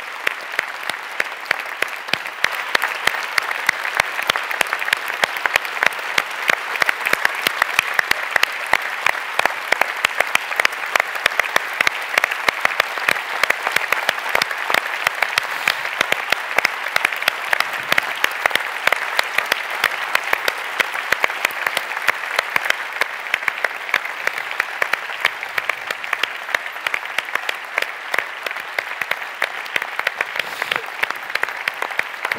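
A large audience applauding: a dense, steady standing ovation of many hands clapping.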